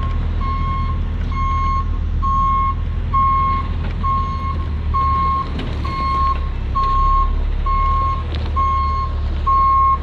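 Backup alarm of a loaded knuckle boom truck beeping steadily, about three beeps every two seconds, as the truck reverses. Its engine runs low underneath.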